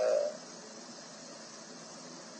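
A man's brief hesitant "à" (uh), then a steady low hiss of background line noise in a pause between phrases.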